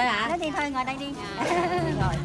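A voice singing with a heavy, regular vibrato over background music, with a steady low accompanying tone coming in near the end.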